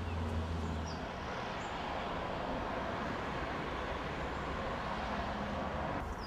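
Steady, even outdoor background noise with no clear single source, and a short faint chirp about a second in.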